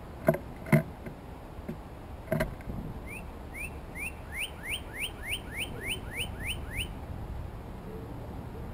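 Three sharp knocks in the first two and a half seconds, then a northern cardinal singing a run of about a dozen quick upslurred whistles, about three a second.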